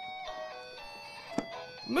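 Oreo DJ Mixer's speaker playing a simple electronic melody of held notes, with one sharp click about a second and a half in.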